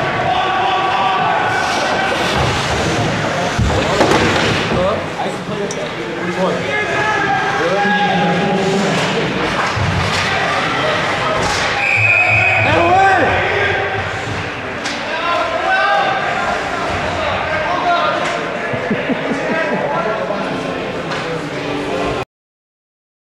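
Ice hockey game in an arena: many voices shouting and calling throughout, with sticks and the puck knocking on the ice and boards, loudest about four seconds in. A short, high referee's whistle blows just after twelve seconds, stopping play.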